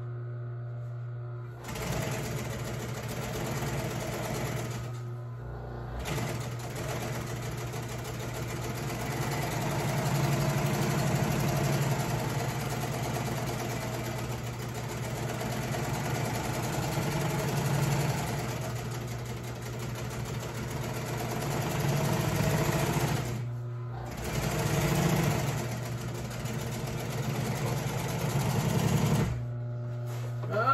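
Industrial sewing machine stitching a seam on an upholstery cover in long runs, speeding up and slowing down, with short stops about five seconds in and again near the end. A steady motor hum runs underneath, heard on its own before the stitching starts and in the pauses.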